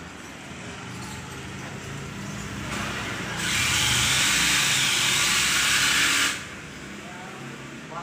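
Water running from the tap of a ceramic water-dispenser jar into a mug: a steady hiss that starts almost three seconds in, is at its loudest for about three seconds, then cuts off suddenly as the tap closes.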